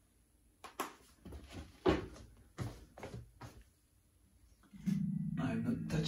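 Electric guitar played through a Fender Hot Rod Deluxe tube amp: a few quiet strokes, then about five seconds in a louder held chord. It is played to check whether the amp now saturates with its output-tube bias set hotter.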